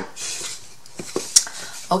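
A few light wooden clicks and knocks about a second in, from small painted wooden drawers being handled and pushed back into their chest.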